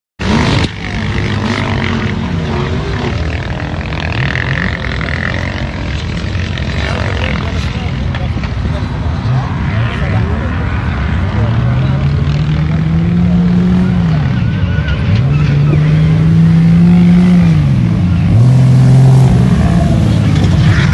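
4x4 SUV and pickup engines revving hard while climbing a sand dune. In the second half the engine pitch rises, holds high for a couple of seconds and drops, three times over.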